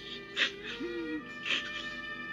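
Cartoon orchestral score with held notes, broken twice by short animal-like cries, about half a second in and again after a second and a half, with a short sliding tone between them.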